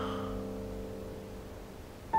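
Soft piano background score: a single held chord slowly fading away.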